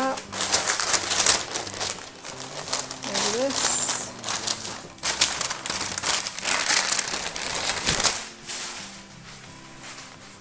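Parchment (baking) paper rustling and crinkling loudly as a sheet of rolled dough is flipped onto a baking pan and the paper is peeled off. The crackling runs in quick bursts for about eight seconds, then dies down near the end.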